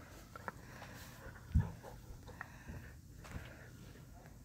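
Quiet sounds of a dog lying under a bed close to the microphone, with a soft low thump about a second and a half in.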